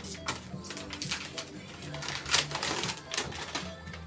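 Anesthesia patient monitor beeping about twice a second, tracking the anesthetized dog's heartbeat, over light clicking and clatter of steel surgical instruments, with a louder clatter a little past halfway.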